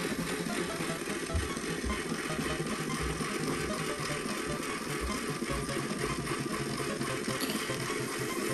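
Small battery motor of an Eggmazing egg decorator running steadily as it spins an egg against a felt-tip marker, with a few soft knocks from handling the toy.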